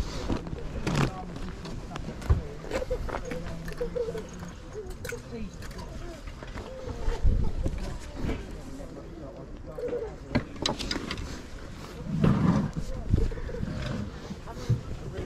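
T-shirts being handled and rummaged through a plastic bag: cloth rustling and plastic crinkling, with scattered small clicks. Faint voices in the background, and a louder low bump near the end.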